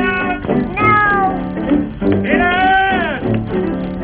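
Cartoon orchestral score with three meow-like gliding cries over it. The last and longest comes just after two seconds in, rising, holding and then falling.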